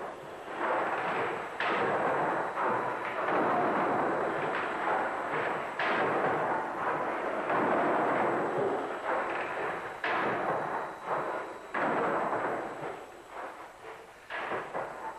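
Victorian steam beam pumping engine running: a loud, rushing mechanical noise that surges sharply and eases off every few seconds.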